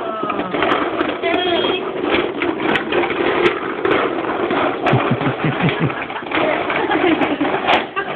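Plastic wheels of a toddler's ride-on toy car rolling and rattling over rough concrete as it is pushed along, under people talking.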